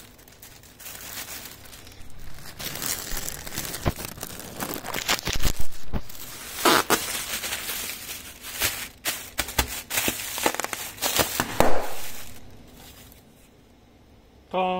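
Inflated plastic air-cushion packing film crinkling and crackling as it is grabbed and handled. The crinkling is irregular, with the loudest crackles about halfway through and again shortly before it dies away near the end.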